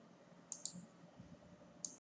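Three faint, short clicks: two close together about half a second in and one near the end.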